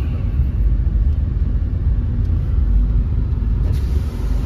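Steady low rumble of a car's engine and tyres heard from inside the cabin while it drives along slowly.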